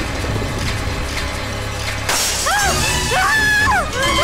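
Tense film background score with a low drone, broken about two seconds in by a sudden loud crash like shattering glass, after which the music continues with rising-and-falling swooping tones.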